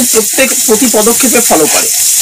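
A person talking, in pitch like a woman's voice, over a steady high hiss.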